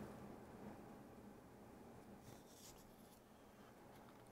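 Near silence: room tone, with a brief faint scratchy rustle a little past halfway.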